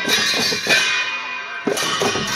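Live Newari percussion for a Lakhe dance: drum beats with clashes of metal cymbals that ring on between strikes.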